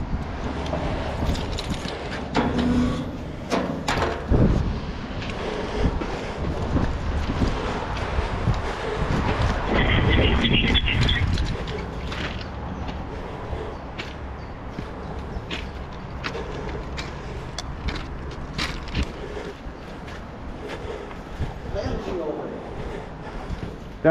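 Footsteps crunching over railway track ballast, a string of irregular sharp crunches and knocks, with wind rumbling on the body-worn microphone.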